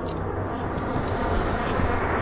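A dense, steady rumbling noise that grows louder toward the end.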